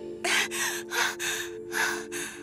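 A woman gasping in several quick, startled breaths, over soft sustained background music.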